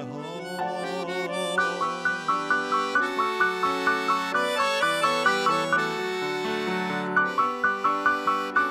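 Accordion and keyboard playing an instrumental passage with no voice: sustained chords under a repeated figure of short high notes, about two or three a second.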